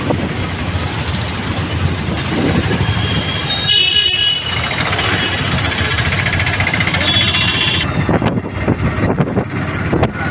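Auto-rickshaw engine running along with the surrounding street traffic, heard from inside the open-sided rickshaw as it moves. Brief high-pitched tones sound about four seconds in and again near seven seconds.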